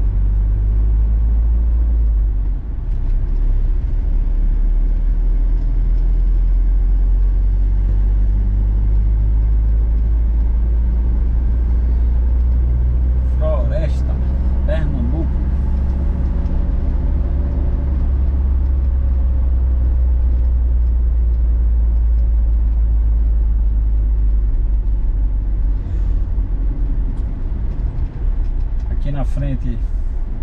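Troller 4x4 driving at a steady speed, its engine and road noise a constant low drone heard from inside the cabin.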